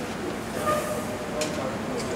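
Laboratory wind tunnel running: a steady rushing noise of the fan and airflow past a test conductor cable, with a short click about one and a half seconds in.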